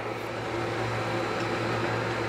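Steady low electrical hum with a whirring, fan-like hiss from running shop equipment around the laser engraver, unchanging throughout.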